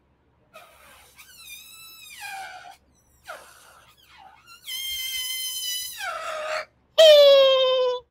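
Air squealing out through the stretched neck of a partly inflated latex balloon as it deflates: several high-pitched squeals that bend up and down in pitch, with short gaps between them. The loudest squeal comes near the end and slides downward in pitch.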